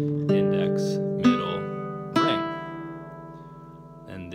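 Classical guitar played fingerstyle: three single notes picked about a second apart on the treble strings, with the index, middle and ring fingers, completing a thumb-thumb-thumb-index-middle-ring arpeggio. The notes then ring on together and fade.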